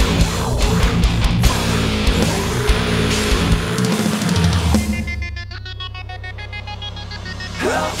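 Metalcore demo recording with distorted guitars, bass and drums playing heavily for almost five seconds. The band then drops out to a held low bass note under a chopped, stuttering higher pattern, and the full band crashes back in at the very end.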